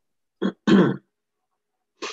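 A man clearing his throat in two short bursts, the second longer and louder.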